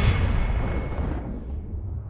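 Cinematic boom sound effect: the sudden hit lands just before this stretch, and its long, low rumble fades away over about two seconds.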